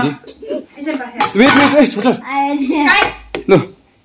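Voices of children and adults talking over each other, with a short sharp click about three seconds in.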